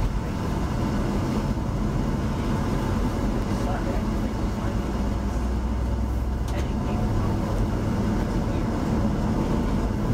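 Tour coach driving at road speed, heard from inside the cabin: a steady low engine rumble with tyre and road noise.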